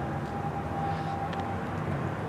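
Steady low rumble of outdoor background noise with a low hum, and a faint thin whine that fades out in the second half.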